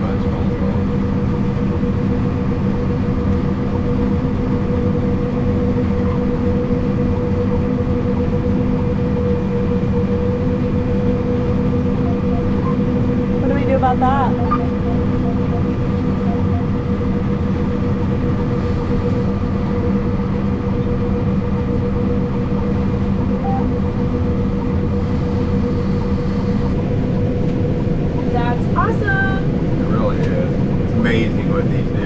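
Combine harvester running steadily while cutting beans, heard from inside the cab: an even machine drone with a constant hum. A brief voice can be heard about halfway through and again near the end.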